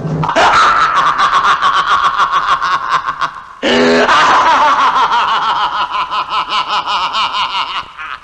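High-pitched, cackling laugh in rapid, evenly spaced pulses. It comes in two long runs, broken by a short pause and a new breath about three and a half seconds in.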